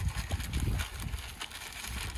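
Wind buffeting the microphone in a low rumble, with faint scattered taps and crinkles from a plastic bag being handled.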